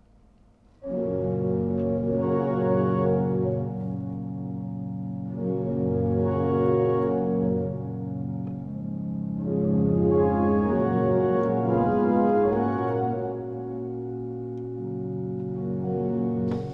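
Unit pipe organ sounding sustained chords, starting about a second in, that swell louder and fade back three times as the expression pedal opens and closes.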